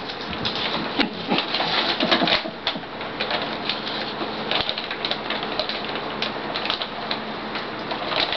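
Plastic bag of Beggin' Strips dog treats crinkling and rustling as a hand rummages in it, with a steady scatter of small clicks and crackles.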